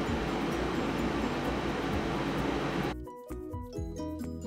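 Steady air-conditioner noise with light background music under it. About three seconds in, the noise cuts off suddenly and only the music is left, a tinkly tune of clear, separate notes.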